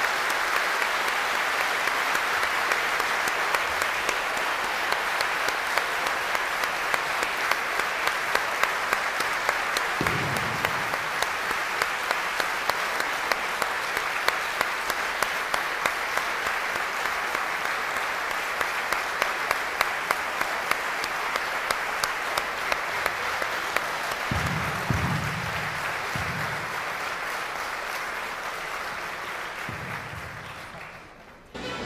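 Large audience applauding, a dense, sustained clapping with single louder claps standing out at a regular pace through most of it; it eases slightly near the end.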